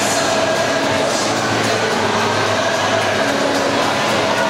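Steady din of an indoor swimming pool during a race: water splashing from a swimmer's strokes mixed with the hall's general noise, no single sound standing out.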